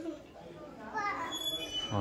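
Background chatter of people with children's voices, faint and unclear, with a few brief high-pitched sounds about halfway through.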